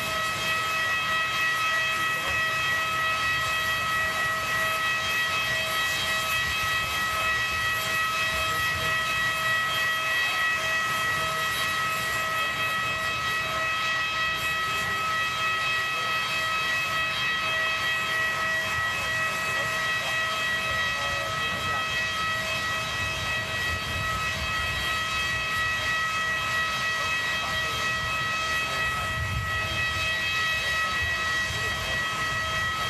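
Steady, high-pitched machine whine made of several even tones over a constant hiss, typical of a parked jet airliner's auxiliary power unit running.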